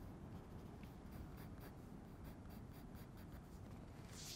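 Pencil lead scratching on drawing paper in quick, short hatching strokes that repeat a few times a second, faint.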